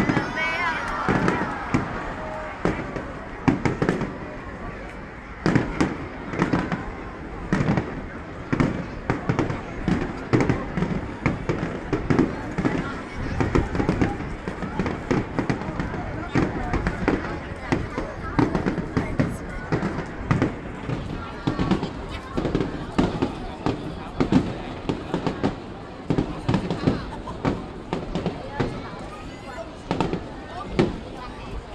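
Aerial fireworks shells bursting overhead in a rapid, irregular string of bangs, several a second.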